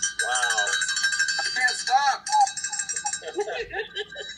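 A loud, bell-like ringing with many overtones, with a voice calling over it; it stops suddenly a little past two seconds in, leaving short voice sounds.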